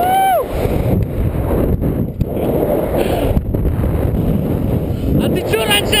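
Wind rushing over the microphone of a camera swinging through the air on a rope jump, with a brief yell that rises and falls in pitch at the start and a voice shouting near the end.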